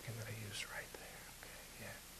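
Soft, quiet speech, a low voice and whispered sounds, in the first half second or so, then faint room tone.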